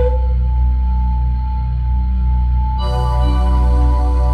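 Ambient meditation music: a steady low drone under slowly pulsing deep tones, with a long held singing-bowl tone ringing over it. A new cluster of higher bowl-like tones comes in about three seconds in.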